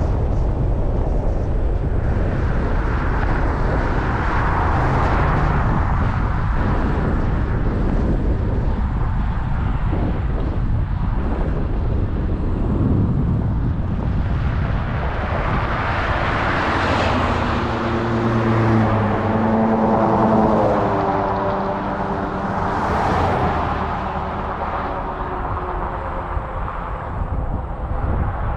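Wind rumbling on the microphone, with vehicles passing on a road: tyre noise swells and fades several times, and in the second half an engine hum comes and goes as one goes by.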